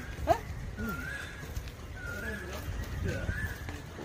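A bird repeating a short whistled note about once a second, each note lifting and then dropping back. Low murmured voices and a low rumble lie underneath.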